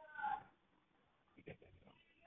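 Faint end of a street tomato vendor's drawn-out call, heard through an open window and gone within the first half-second. After it there is near quiet, with one soft click about one and a half seconds in.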